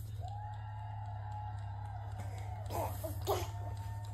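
A baby vocalizing in an activity jumper: one long, steady high-pitched note, then a few short squeals that rise and fall about three seconds in, with one sharp louder moment.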